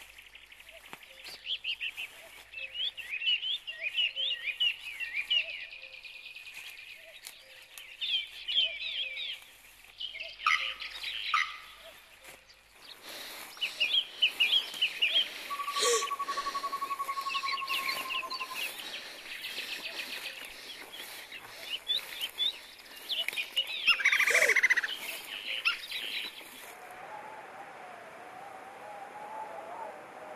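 Woodland birds chirping and singing, quick repeated calls throughout. A steady rushing background noise comes in a little before halfway. A long, slightly falling whistle is heard near the middle, and a louder rapid rattling call comes late on.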